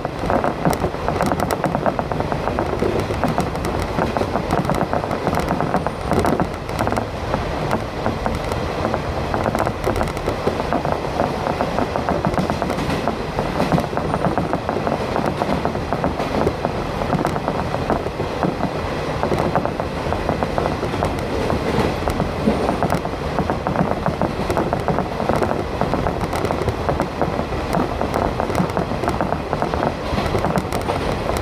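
Steady running noise of a train on the move, heard from inside the passenger car: a constant rumble of wheels on rails and the car's own running noise.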